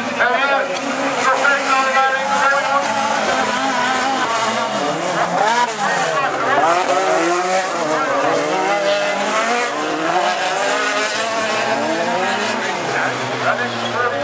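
Several autocross cars' engines revving hard together on a dirt track. Their overlapping notes rise and fall as the cars accelerate and lift through the turns.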